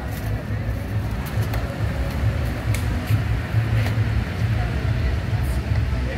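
Outdoor background noise: a loud, uneven low rumble with faint voices in the background.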